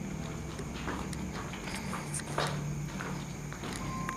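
Footsteps on a littered floor: irregular knocks and scuffs, a few strides apart, over a low steady hum.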